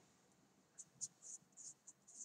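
Marker pen writing on a slip of paper: a run of faint, short scratchy strokes, starting about a second in.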